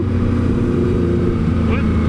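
Motorcycle engine running at a steady cruising speed, heard from the rider's seat, with wind rushing over the microphone.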